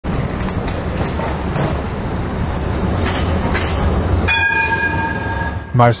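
A city tram passing close by, its steady rumble and rolling hiss filling the first four seconds. About four seconds in, a steady high tone sounds for over a second, then stops.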